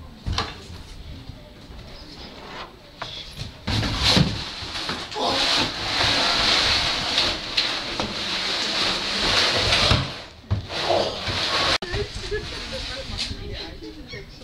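A large plastic crate being pushed and dragged across the floor: a long scraping rush lasting several seconds, with a few hard knocks.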